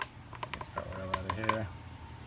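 A red plastic oil funnel being pulled out of a motorcycle engine's oil filler hole, clicking and knocking lightly against the filler neck several times. A short hummed voice sound is heard partway through.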